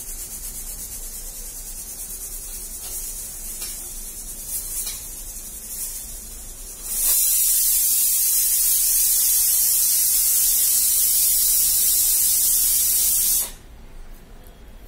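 A steady, high-pitched hiss that comes in suddenly about seven seconds in, stays loud, and cuts off sharply about six seconds later. Before it there is a fainter hiss with a few light ticks.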